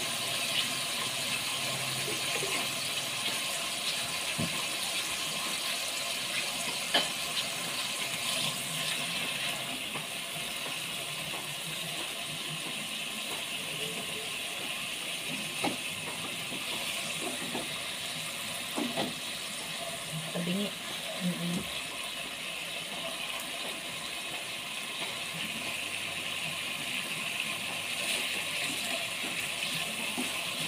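Pork steaks sizzling steadily as they fry in oil in a pot, with a few light knocks from handling the pot and tongs.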